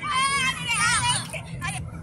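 Children shouting and yelling over one another in high-pitched voices, loudest in the first second or so, then dying down to quieter voices with a few short clicks.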